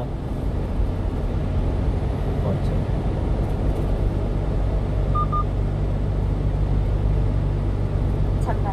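Steady engine and road noise of a 1-ton refrigerated box truck driving along a country road, heard inside the cab as a continuous low hum. Two brief faint beeps come about five seconds in.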